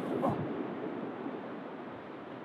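Steady rushing noise of ocean surf and wind on an open beach, with a short exclamation just after the start.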